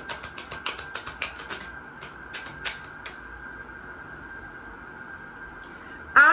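A deck of tarot cards being shuffled by hand: a quick run of soft papery clicks for the first two or three seconds, thinning to a few scattered clicks, over a faint steady hum.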